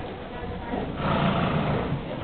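A horse cantering in the arena, with a loud breathy blowing sound that starts about a second in and lasts about a second.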